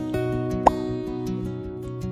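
Soft acoustic guitar background music, with one short rising pop, the loudest sound, about two-thirds of a second in.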